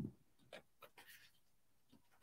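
Near silence with a few faint light taps and rubs: a small foam-tipped detail blending brush dabbing Distress Oxide ink through a stencil onto card.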